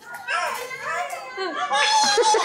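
A young child's high-pitched voice, vocalizing in short rising and falling sounds that get louder near the end.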